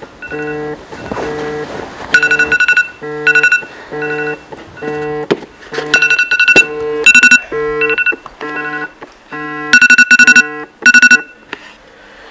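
Smartphone alarm ringing: a repeating electronic tune of short notes about two a second, with a louder run of rapid beeps about every four seconds. It stops shortly before the end.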